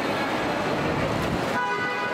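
A car horn sounds one steady held tone for about half a second near the end, over steady background noise.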